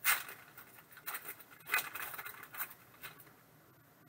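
A foil trading card pack (Upper Deck SP Authentic Golf) being torn open by hand, its wrapper crinkling in several short rustling bursts, the sharpest at the very start. The rustling stops a little after three seconds in.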